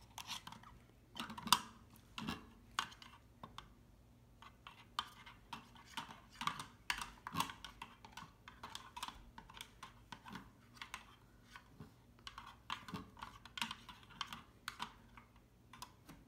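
Faint, irregular light plastic clicks and taps: a small plastic scooper stirring and scraping inside a plastic toy toilet holding a little water.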